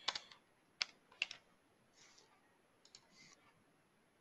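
Faint computer keyboard typing and mouse clicks: a few sharp separate clicks, most of them in the first second and a half, with fainter ones later.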